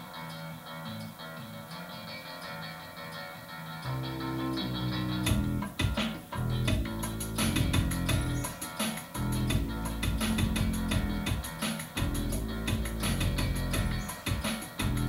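Live looped music built on a loop station: layered guitar loops, joined about four seconds in by a low bass line and about a second later by a drum-machine beat with crisp, high hi-hat ticks, after which it is louder.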